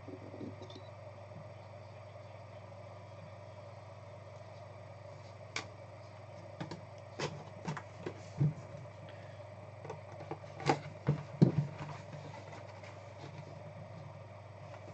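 Handling noise on a tabletop: sharp clicks and knocks from hard plastic card holders and a card box being handled and opened. The knocks start about halfway through, scattered and irregular, over a steady low hum.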